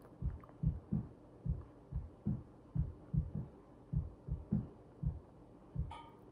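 A person chewing food close to the microphone, heard as dull, low thuds about two or three times a second, unevenly spaced.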